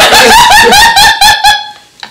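A woman laughing hard and high, in a quick even run of 'ha-ha-ha' pulses about seven a second that dies away near the end.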